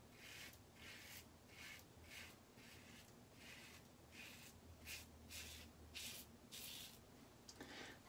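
Karve Christopher Bradley stainless steel safety razor, fitted with a C plate and a Voskhod blade, cutting four days of stubble through lather. It makes faint short scraping strokes, about a dozen, roughly two a second.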